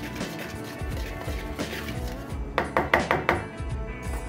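Background music, with a wire whisk mixing dry flour in a plastic mixing bowl. Past the middle it knocks sharply against the bowl about five times in quick succession.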